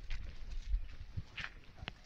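Footsteps on a concrete walkway: a few irregular light steps and scuffs.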